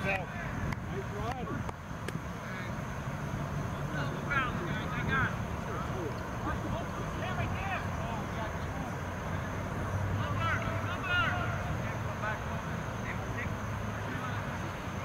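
Distant shouts and calls from soccer players on the field, coming in short bunches, over a steady low rumble.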